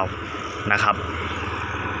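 Steady drone of a diesel locomotive's engine running at a distance.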